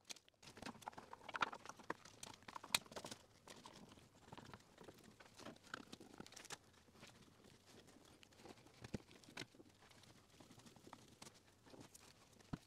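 Faint handling noises from a wooden frame glue-up: scattered light clicks, taps and scraping as the frame is handled and a band clamp with plastic corner blocks is fitted around it, the sharpest clicks in the first three seconds.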